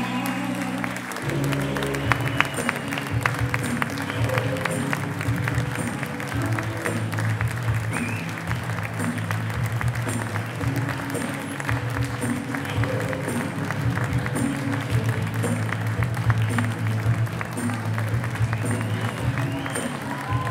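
Music with a steady beat and an audience applauding over it. The music shifts to new held chords about a second in.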